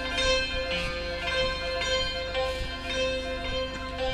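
Santur (hammered dulcimer) played with hammers: a few separate struck notes, its metal strings ringing on.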